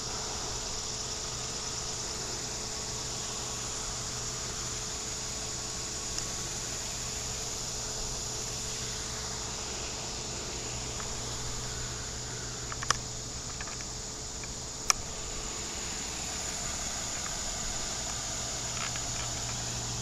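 Steady outdoor ambience of insects trilling high and constant, over a low steady hum. Two sharp clicks come a couple of seconds apart, about two-thirds of the way through.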